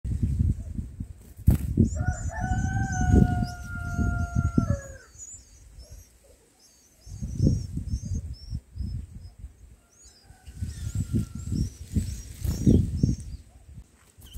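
Thin, high chirping of small birds runs throughout, while a distant rooster gives one long held crow from about two to five seconds that drops at the end, with a fainter call later. Low rumbling bursts come and go underneath.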